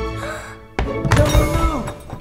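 Background music fades out. About a second in, a loud thud and clatter marks a fall from a kitchen counter. A short cry that drops in pitch follows near the end.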